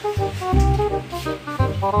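Background music: a tune of short stepped melody notes over a pulsing bass line.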